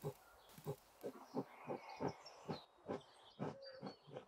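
Mechanical pencil lead scratching on Bristol board in a run of short, quick strokes, about two or three a second.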